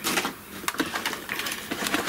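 Handling noise as a small hot foil machine is pulled over on a craft desk: irregular clicks and knocks with short scrapes.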